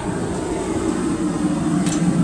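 Propane gas forge burner running: a steady, even low roar with no separate strikes.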